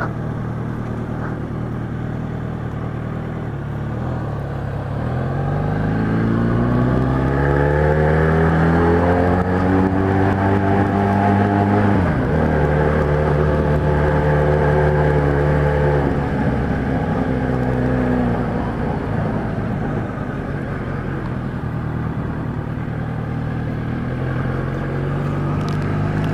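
Kawasaki Z1000's inline-four engine through an aftermarket 4-into-1 exhaust, heard from on the moving bike. The revs climb from about five seconds in, drop sharply about halfway through, hold briefly, then fall away to a low, steady running for the last few seconds.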